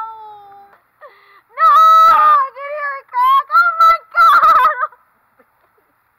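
A woman's loud, high-pitched squeals and shrieks, a string of several of them mixed with laughter, as a raw egg is broken over her head. A shorter cry trails off at the start, the loudest squeals come in the middle, and they stop about a second before the end.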